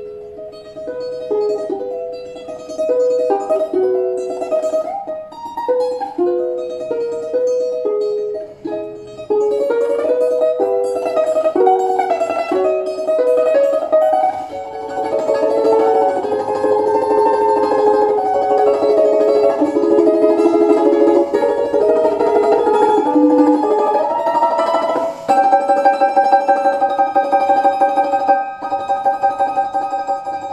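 Balalaika played solo: a plucked melody of separate notes, growing denser with sustained notes after about nine seconds, then ending on a chord held in rapid tremolo from about 25 seconds in.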